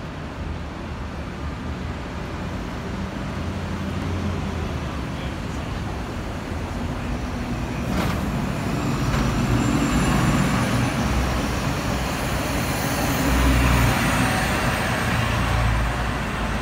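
A 2009 Orion VII Next Generation hybrid-electric transit bus drives past close by, its engine rumble growing louder from about halfway through, over steady city traffic noise.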